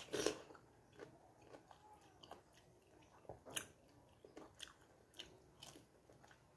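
A bite into a juicy slice of fresh pineapple just after the start, then faint chewing with scattered small clicks of the mouth.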